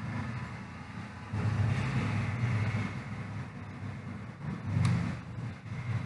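Low, uneven rumbling background noise, louder from about a second and a half in, with one sharp click about five seconds in.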